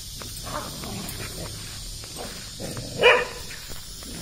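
Dogs play-wrestling, with one short bark about three seconds in and a fainter call about half a second in.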